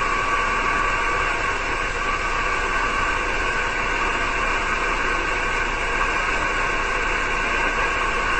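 Steady hiss of band noise from a six-metre SSB receiver's speaker, with no station coming through.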